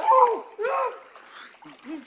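Water splashing as a swimmer moves through a swimming pool, with voices calling out loudly twice in the first second.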